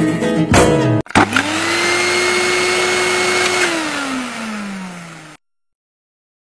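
Plucked-string music ends about a second in with a couple of sharp clicks, then a motor-like whir with a hiss spins up, holds a steady pitch, winds down in pitch while fading, and cuts off abruptly.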